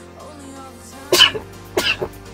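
A man sneezing twice, two short sharp bursts about a second in and near the end, over steady background music.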